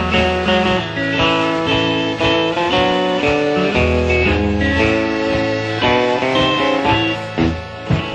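Instrumental close of a 1950s-style country song, a guitar-led band playing the final bars without vocals. Near the end the band strikes two closing chords, and the music begins to fade.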